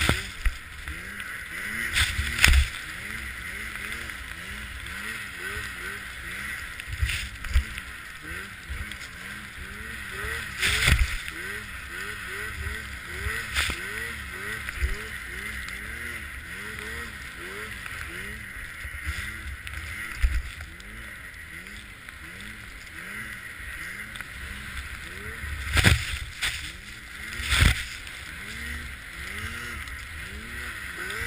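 Arctic Cat M8 snowmobile's two-stroke engine running in deep powder, its pitch rising and falling over and over as the throttle is worked, with steady wind and track noise. Sharp knocks stand out a few times, loudest around the start, about eleven seconds in and near the end.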